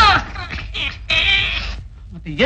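A man's exaggerated comic crying wail: a short cry right at the start, then a higher, strained, drawn-out cry about a second in.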